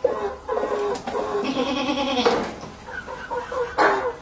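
Goats bleating: a string of short bleats, with one long, wavering bleat about a second and a half in.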